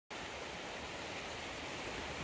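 Steady outdoor background noise: an even rushing hiss with no distinct events.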